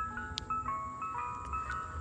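An ice cream truck's chime jingle playing a simple electronic melody of clear single notes, several a second, fairly faint.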